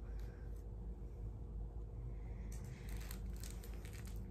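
Faint rustling and crinkling of handled packaging or a dog toy, loudest about two and a half to three and a half seconds in, over a low steady room hum.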